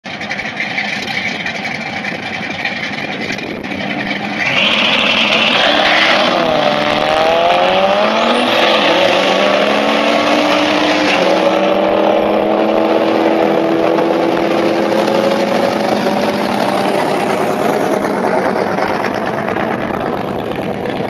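Two drag-racing cars, one a Mitsubishi Lancer Evolution with a GT35R turbo, launching off the line about four and a half seconds in and accelerating hard down the strip. The engine pitch climbs and drops back at each upshift, then fades as the cars head away down the track.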